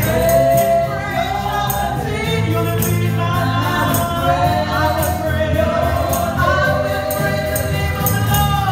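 A women's worship team sings a gospel song together over a live band of guitars, a bass line and drums keeping a steady beat. Long held sung notes glide between pitches.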